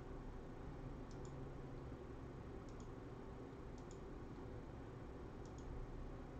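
Faint clicks of a computer mouse, four quick pairs spaced a second or more apart, as notebook cells are selected and run. A low steady hum lies under them.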